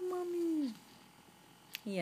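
A three-month-old baby cooing: one drawn-out vowel sound, held level and then dropping in pitch, lasting under a second.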